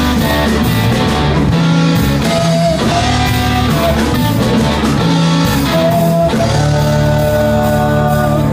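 Live rock band playing: electric guitar holding sustained lead notes with pitch bends, over bass guitar and a drum kit keeping a steady beat.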